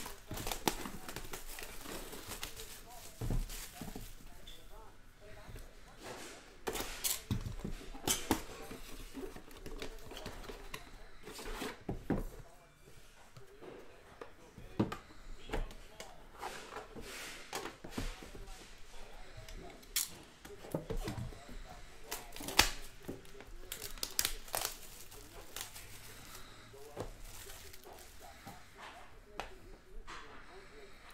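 A shrink-wrapped trading-card box being unwrapped and opened by hand: plastic wrap crinkling and tearing, with scattered sharp clicks and taps as the cardboard box and the card tin inside are handled.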